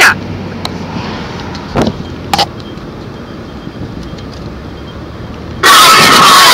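Car cabin noise while driving: a steady hum of engine and tyres on the road, with two brief sounds about two seconds in. Loud music cuts in suddenly near the end.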